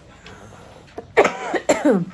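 A woman clearing her throat with a short, rough cough about a second in, after a quiet moment.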